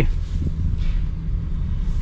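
Steady low rumble inside the cabin of a 2024 Honda Odyssey Elite minivan as it drives slowly, its 3.5-liter V6 running.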